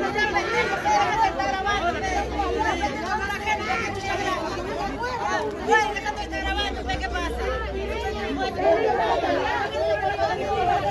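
A crowd of people talking over one another, a steady mix of many voices with no single speaker standing out.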